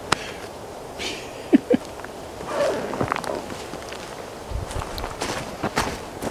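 A person getting up from a cushioned chair and walking off over ground covered in dry pine needles: scattered footsteps and rustling, with a low thud partway through.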